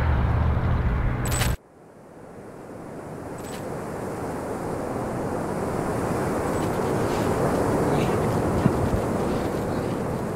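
Outdoor background noise with a low rumble stops suddenly about one and a half seconds in. A steady rushing noise then fades in and grows louder over the next several seconds.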